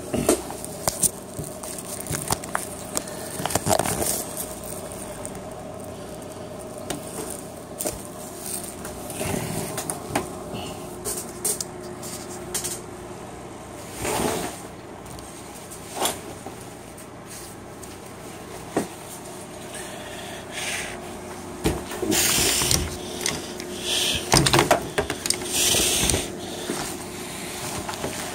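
Handling noise from tactical gear being shifted around by hand: a gun belt with holsters and pouches, then a load-bearing vest, scraping and rustling on a table, with scattered clicks and knocks and heavier rustling near the end. A faint steady hum runs underneath.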